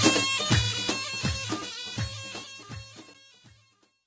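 Music with a steady drum beat, fading out to silence about three and a half seconds in.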